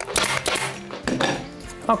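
Pneumatic upholstery staple gun firing staples through upholstery fabric into a wooden chair back: a quick run of sharp metallic clacks at the start, then another about a second in.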